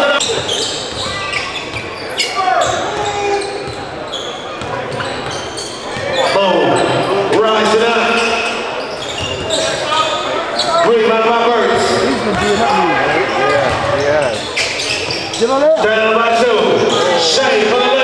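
A basketball dribbled on a hardwood gym floor during live play, with players and spectators shouting and talking in the large gym.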